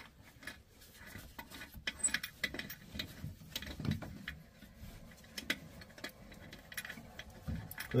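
Faint, irregular small clicks and scrapes of a hand loosening the plastic supply-line nut and fittings under a toilet tank.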